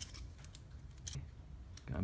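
A few faint, scattered clicks and taps of small plastic parts being handled and fitted onto a Tamiya Mini 4WD AR chassis.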